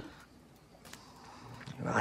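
A quiet pause in dialogue, opening with a brief sharp sound. Near the end a man's low voice begins with a drawn-out "well".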